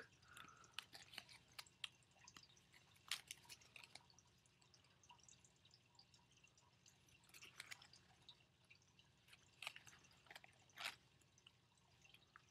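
Faint, scattered paper clicks and rustles as a small homemade folding paper card is flipped open and closed in the hands, a few sharper ticks about three seconds in and again toward the end.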